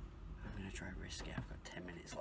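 A man whispering to the camera in short hushed bursts.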